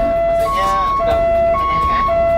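Fire truck's two-tone siren sounding, switching back and forth between a low note and a higher note about every half second, heard from inside the truck's cab.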